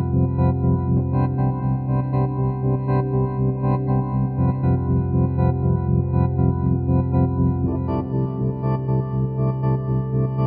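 Electronic organ holding sustained chords, its volume pulsing evenly a few times a second from an LFO tremolo. The chord changes about eight seconds in.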